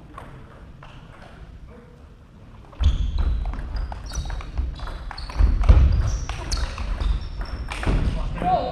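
A table tennis rally starting about three seconds in: the ball clicking sharply off bats and table in quick succession, with the players' feet thudding and squeaking on the wooden hall floor.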